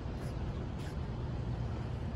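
Steady low background rumble of a busy wholesale produce market, with a few faint soft ticks over it.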